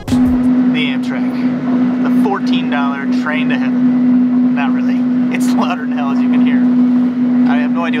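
A loud, steady low hum, one unbroken tone, inside an Amtrak coach car; its cause is unknown to the rider, who takes it as the kind of noise one puts up with on Amtrak.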